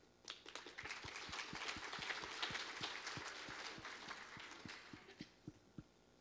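Audience applauding: many hands clapping at once, starting about a third of a second in, at its fullest around the middle, then thinning to a few scattered claps near the end.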